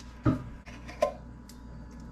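A few light clinks and knocks against a glass bowl as refried beans are scooped and tipped out of a metal can into it.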